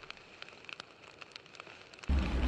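Faint fire-crackling sound effect: scattered small crackles and pops over a low hiss, the dying tail of a fiery title sting.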